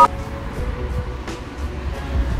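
Music cuts off at the very start, leaving outdoor background noise with a steady low rumble.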